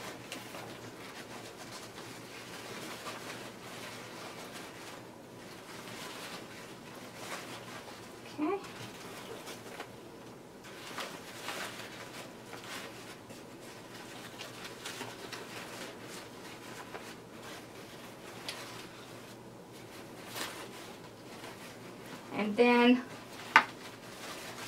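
Ribbon loops of a large bow rustling and brushing against each other as they are pulled apart and fluffed by hand. Near the end a brief pitched warble is the loudest sound.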